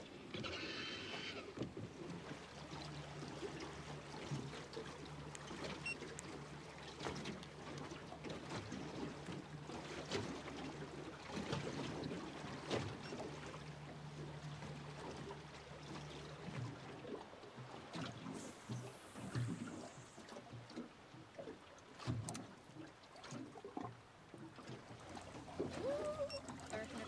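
Water lapping and slapping against the hull of a small drifting boat, with scattered small ticks and knocks. A steady low hum runs under it and stops about two-thirds of the way through.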